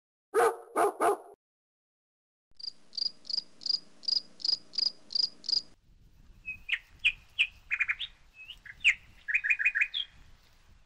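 Three short loud sounds near the start, then birdsong: first a run of evenly spaced high chirps, about three a second, then varied chirps and quick trills.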